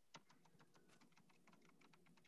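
Faint computer keyboard typing: a quick, even run of light keystrokes.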